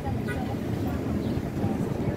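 Outdoor crowd ambience: indistinct chatter of passersby over a steady low rumble.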